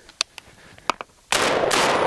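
A Benelli M4 semi-automatic 12-gauge shotgun fires its last round with a sudden loud blast about a second and a half in, followed by a long fading echo. This is the last shell, so the bolt locks open. A few faint handling clicks come before the shot.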